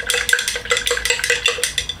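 A thin stick stirring a liquid in a tall glass jar, clicking quickly and unevenly against the glass several times a second, as solids in the mix are dissolved for home-made biodiesel.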